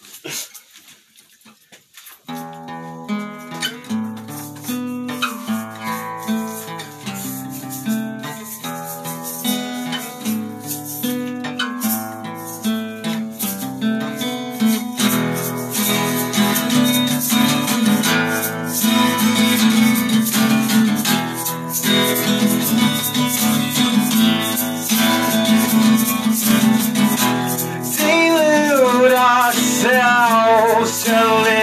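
A short laugh, then an acoustic guitar starts a song intro about two seconds in, playing plucked notes that fill out and grow louder about halfway through. A singing voice comes in near the end.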